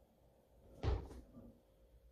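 A single knock with a low thud about a second in, from the plate-loaded anvil horn shifting against its weight plates as the lifter sets his grip.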